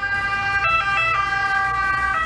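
Ambulance siren sounding its two-tone call, the pitch stepping between a lower and a higher note, over a low vehicle rumble.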